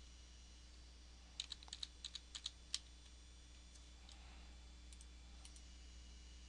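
Computer keyboard being typed on: a quick burst of about nine keystrokes a little over a second in, then a few fainter clicks near the end, over a faint low hum.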